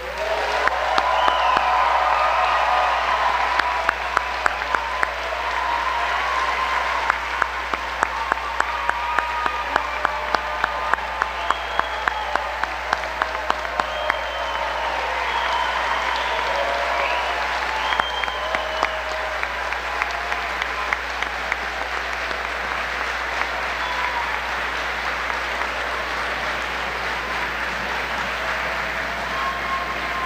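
A large audience applauding and cheering, with whoops and whistles over the clapping, loudest in the first few seconds. Through the first half, sharp claps stand out at a steady beat of about two a second.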